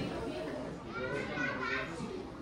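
Indistinct background chatter of several people's voices, some of them children's.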